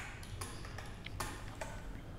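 Faint, scattered clicks of computer keyboard keys being typed, a few in two seconds, over a steady low hum.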